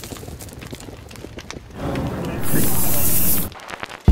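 Crackling noise with scattered clicks that swells into a loud burst of static hiss, about a second long, then cuts off suddenly.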